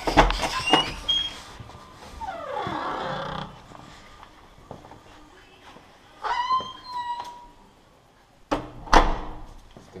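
A front door being handled: a loud knock as it is opened, a short squeal about six seconds in, and two sharp bangs about half a second apart near the end as it is pulled shut.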